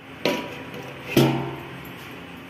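A steel plate set as a lid on an iron kadhai: two metallic clanks that ring briefly, the second, about a second in, the louder.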